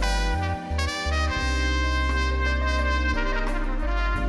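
Live band music led by a trumpet playing held notes into the microphone, over keyboards and a low bass line.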